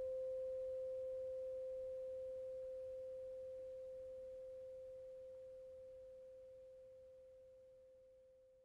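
A 528 Hz tuning fork ringing on as one pure, steady tone after the music has stopped, slowly fading until it dies away near the end.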